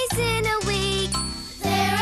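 Children's sing-along song: voices singing over a backing band with steady bass notes. A little past a second in, the singing stops briefly and a bright high chime rings before the voices come back in.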